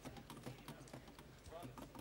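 Near silence in a lull on stage: faint scattered clicks and a faint voice in the background.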